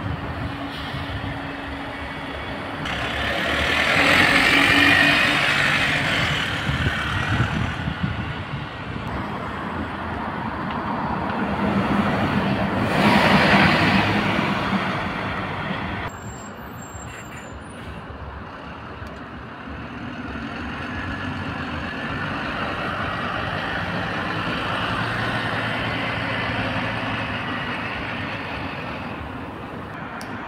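Road traffic: double-decker buses and cars driving past on a street. There are two louder pass-bys, about 4 and 13 seconds in, over a steady background of engine and tyre noise.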